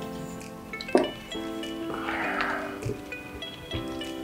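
Background music with sustained notes. About a second in there is a sharp click, and near the middle a brief rustle with a few light knocks, from the aluminum tripod being handled as its legs are spread.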